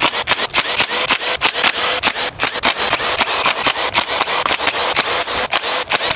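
Milwaukee cordless impact driver hammering without a break, a fast rattling train of impacts over its motor whine, as it runs out 10 mm bolts.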